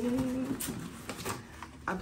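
A woman's low, steady-pitched hummed "mmm" that ends about half a second in, followed by a few faint clicks and rustles. She starts speaking again near the end.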